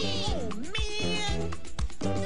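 Upbeat cartoon theme song with steady drum hits; about half a second in, a swooping pitch glide falls and rises over the music.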